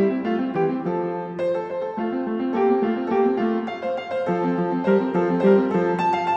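Solo piano playing a brisk classical sonatina allegro in F major: a quick, even stream of light notes over a broken-chord accompaniment.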